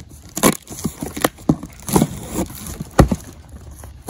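Folding knife cutting open the packing tape on a cardboard box: irregular scratchy rasps and crackles of tape and cardboard, with the loudest sharp snap about three seconds in.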